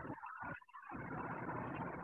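A steady rushing background noise, like distant traffic, dips briefly about half a second in and then holds steady.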